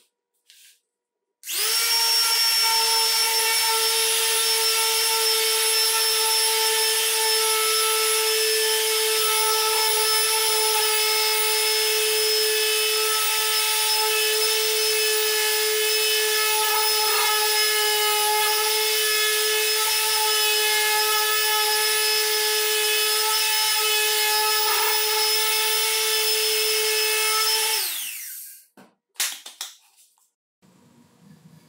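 Ryobi S-550 electric sander, converted from 100 V AC to 18 V DC battery power with a rewound armature, sanding a wooden board. It starts about a second and a half in, runs at a steady high motor pitch, then is switched off near the end and winds down.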